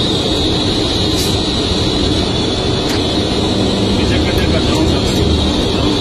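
Mobile crane driving on the road, heard from inside its cab: a steady engine and road drone with a constant high whine above it.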